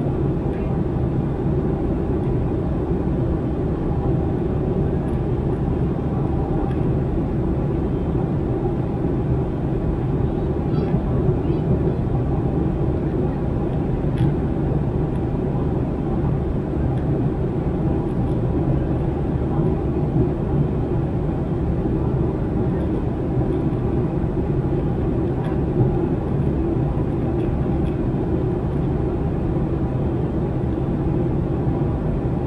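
Airliner cabin noise at cruise, heard inside the cabin: a steady, even low rumble and rush of engine and airflow noise.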